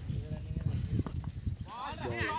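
Several voices of players and onlookers calling out across an open ground, getting louder near the end, over a low, uneven rumble and knocking from the microphone.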